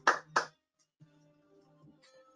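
Two hand claps in the first half second, the end of a short run of applause over a video call. After a brief gap, faint background music with held notes plays underneath.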